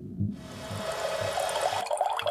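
Breakdown in a drum and bass mix: the drums are gone, leaving a washy, water-like noise effect with faint held tones beneath it, its high end thinning out near the end.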